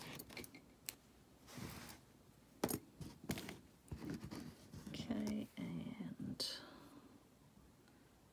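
Handling noise as embroidery thread is readied for the needle: a few short sharp clicks and taps with a brief soft rustle, then quiet murmured speech a little past the middle.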